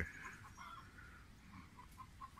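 Faint, scattered clucking of domestic chickens close by.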